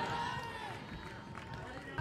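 Faint voices over a low crowd murmur in a softball stadium, fading during a lull with no commentary.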